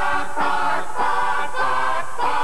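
Commercial jingle music sung by a choir, held notes whose chords change about every half second.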